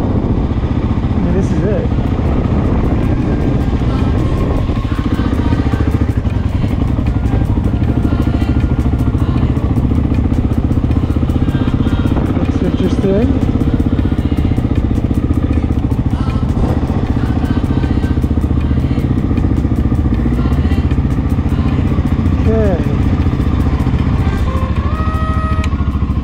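Honda XR600R's air-cooled single-cylinder four-stroke engine running at low revs, steady and unbroken, as the dirt bike rolls slowly and pulls up.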